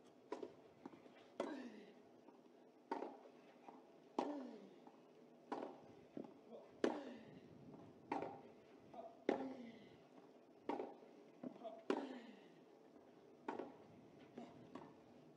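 A clay-court tennis rally: about eleven racket strikes on the ball, one every second and a quarter or so, with fainter ball bounces between them. After every other strike, one player lets out a grunt that falls in pitch.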